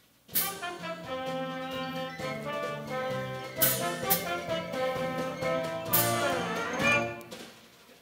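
A pit orchestra plays a short instrumental passage of held chords. It comes in suddenly with an accented hit, has two more accents about 3.5 and 6 seconds in, and dies away shortly before speaking resumes.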